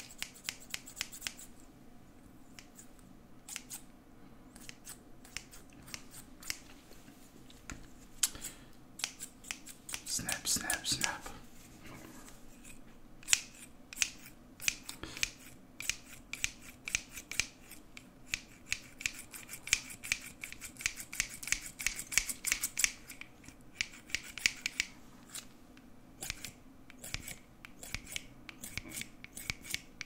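Hair-cutting scissors snipping close to the microphone in quick, irregular runs of sharp clicks. The clicks come most densely in the second half.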